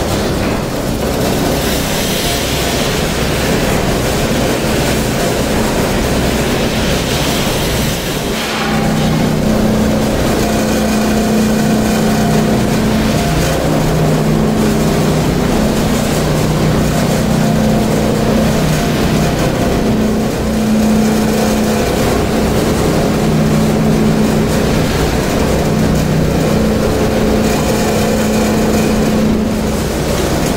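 Roller polishing machine for cutlery running steadily as forks clamped in a jig are worked against its rollers. A low hum comes in about eight seconds in and shifts back and forth between two pitches.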